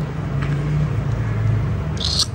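A steady low motor hum, its pitch dropping a little about a second in.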